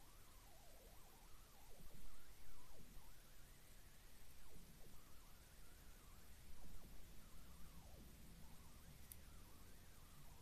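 Nearly quiet room with faint, soft handling noises as seed beads are strung onto fishing line with a beading needle.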